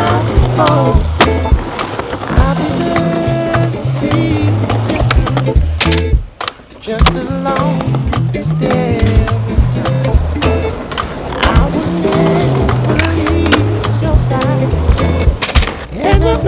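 Skateboard wheels rolling on concrete, with the sharp clacks of tricks being popped and landed, over a music track with a steady bass line. The music drops out briefly about six seconds in.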